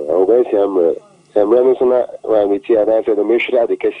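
Speech only: a voice talking in short phrases, with a brief pause about a second in.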